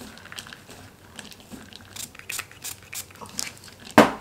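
Gloved hand tossing and squeezing damp shreds of melt-and-pour soap in a plastic bowl, a run of soft crinkling, squishing crackles, with one sharp click near the end.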